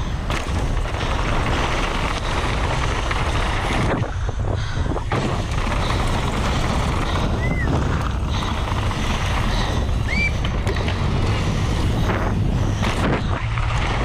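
Downhill mountain bike ridden fast over a dirt and loose-gravel track: tyres rumbling on the surface and the bike rattling, with wind buffeting the microphone. A couple of brief high squeaks sound partway through.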